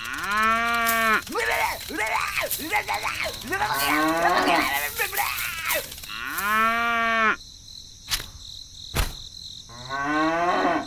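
Loud, drawn-out animal calls, several in a row: a long call at the start, a string of shorter wavering calls, then another long call, with a faint steady high tone behind.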